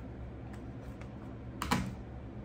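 Light clicks and taps of makeup items being picked up and handled on a tabletop, with a louder double clack about one and a half seconds in.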